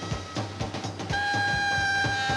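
Swing big band music: a saxophone holds one long note from about a second in, over a steady drum beat.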